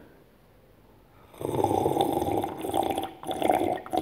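A person gulping a drink from a glass close to the microphones, loud swallows starting about a second and a half in and coming in three or four runs with short pauses.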